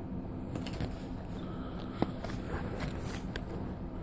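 Faint hand handling of Pokémon trading cards: a few light clicks and slides as the cards are moved about, the sharpest click about two seconds in, over steady low background noise.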